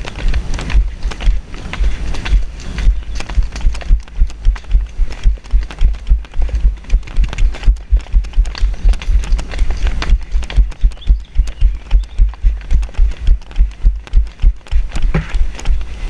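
Steady rhythmic low thumping as a rider without stirrups bounces in the saddle at the canter, jolting the helmet-mounted camera in time with the pony's stride.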